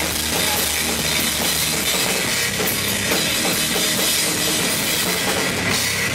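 Live rock band playing at a steady loud level: electric guitar over a drum kit with cymbals.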